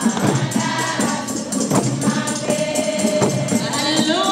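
A group of women singing together, with a rattling percussion beat ticking about four times a second.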